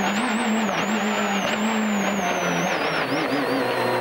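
Rally car engine heard from inside the cabin, pulling at fairly steady revs over tyre and road roar. The engine note dips and drops lower about two-thirds of the way through. A thin high whine slowly falls in pitch throughout.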